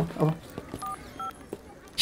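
Two short touch-tone keypad beeps from a smartphone being dialled, about a second in and then again less than half a second later, each a clean two-note tone.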